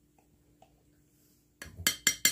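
Cutlery clinking against a dinner plate: a few faint ticks, then a quick run of sharp metallic clinks near the end as food is cut and picked up.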